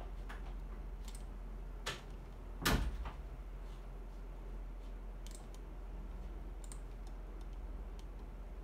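Several short, sharp clicks at irregular intervals from clicking through menus on a laptop, with one louder knock a little under three seconds in. A steady low hum runs underneath.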